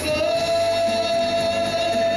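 A man singing a worship song through a microphone, holding one long note over musical accompaniment.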